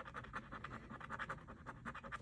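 A coin scratching the coating off a lottery scratch-off ticket: a quick, even run of short rasping strokes, fairly faint.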